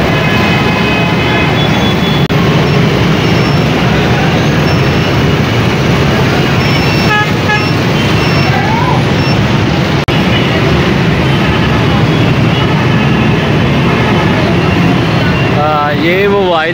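Dense city street traffic of motorbikes, auto-rickshaws and cars: a loud, steady din with horns beeping now and then, including a quick run of short beeps about seven seconds in, and a crowd's voices mixed in.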